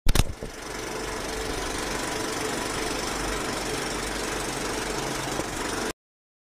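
Film projector sound effect: a sharp click, then a steady mechanical rattle with hiss that cuts off suddenly near the end.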